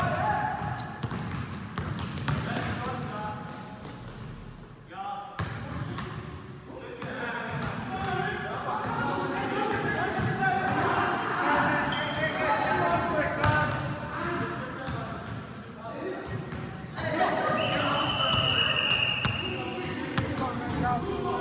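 A basketball bouncing on a gym floor during a pickup game, with players' overlapping shouts and calls echoing in a large hall.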